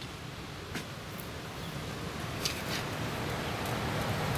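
Steady low rumble and hiss of background noise, with a few faint taps.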